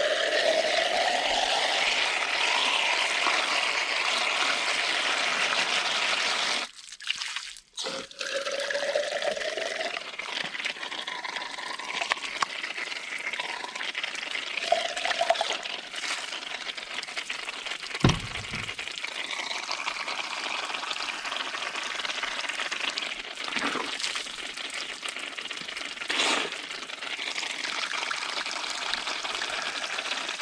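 Heavy rain falling, a dense steady rushing hiss. It breaks off briefly about seven seconds in, and there is a single thump a little past the middle.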